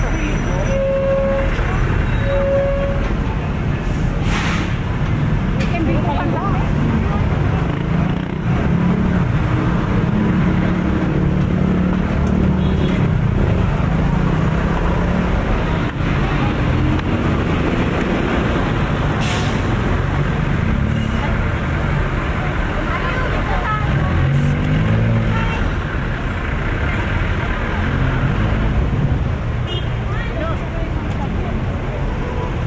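Busy city street traffic: the engines of cars, jeepneys and motorcycles running steadily, with passersby talking. Two short horn beeps sound near the start.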